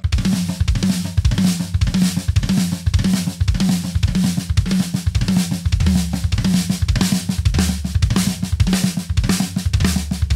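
Acoustic drum kit with Zildjian K cymbals played without a break: a repeating drum phrase of flammed strokes on snare and toms over a doubled bass-drum pattern, moving between the closed and the opened-up versions of the phrase.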